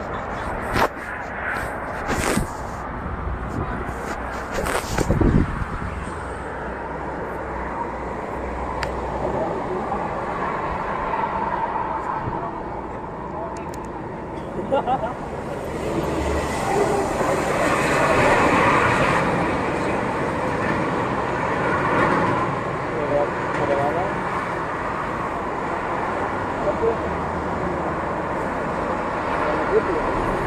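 Outdoor traffic ambience: a steady rush of road noise with faint, indistinct voices, a few sharp knocks in the first few seconds, and a swell in the rush for several seconds past the middle.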